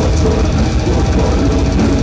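Death metal band playing live, heard from within the crowd: distorted electric guitars, bass and a drum kit, loud and dense without a break.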